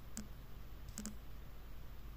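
Two short clicks about a second apart over faint room tone.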